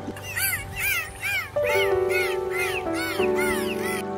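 Dolphin calling in a quick run of short squeaks, each rising then falling in pitch, about three a second, over background music with held notes.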